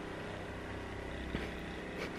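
Handheld percussion massage gun running against a person's upper back, a steady motor hum.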